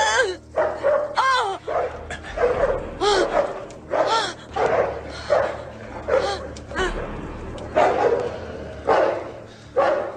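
A dog barking and yelping over and over, a call roughly every second, with a faint low hum underneath.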